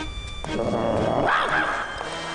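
A short animal-like whine or yelp that swells and bends in pitch, over a faint background music score.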